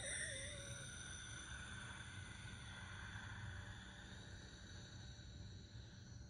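Quiet room with a faint, steady high-pitched ringing that fades out near the end, over a low background hum.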